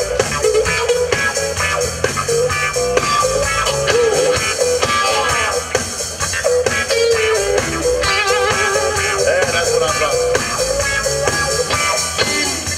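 Live blues band playing an instrumental passage: electric guitar lines over drums and bass, with wavering, bent notes about two-thirds of the way through.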